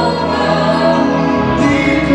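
A congregation singing a praise song together, many voices over steady instrumental backing.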